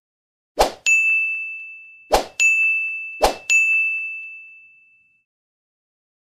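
Animated end-screen sound effects: three sharp hits about a second and a half apart, each followed by a bright ringing ding that fades out, the last ding dying away about five seconds in.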